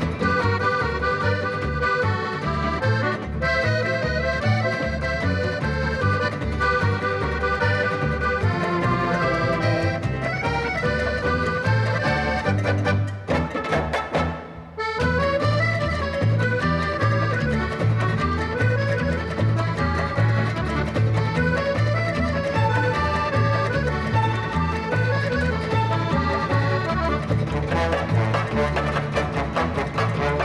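Piano accordion playing a samba tune out front of a dance orchestra, over a steady rhythm-section beat. The band stops for a short break about halfway through, then comes back in.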